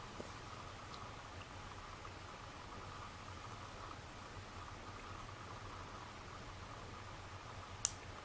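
Quiet steady background hiss with a faint steady tone, a few faint ticks, and one sharp click just before the end.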